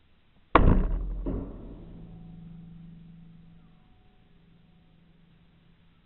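150 lb recurve crossbow fired with a broadhead bolt: a sharp, very loud crack of the string release about half a second in, then a second, smaller knock under a second later. A low hum rings on after it and fades over a few seconds.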